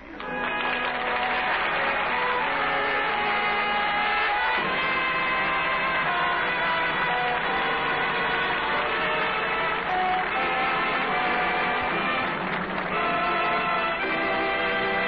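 Orchestral music bridge from an old radio broadcast: sustained chords that move to new harmonies every second or so, with a fuller passage starting about four and a half seconds in. The sound is thin and muffled, with no high treble.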